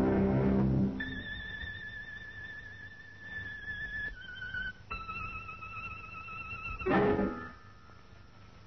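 Closing bars of a song whose vocal line is played on solo violin: a low accompanying chord, then the violin holds a long high note with vibrato, steps down to two lower sustained notes, and a final low chord about seven seconds in that dies away.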